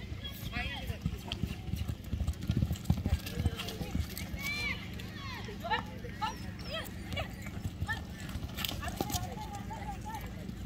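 Horse galloping on soft arena dirt: irregular hoofbeats, loudest around three seconds in, with faint voices in the background.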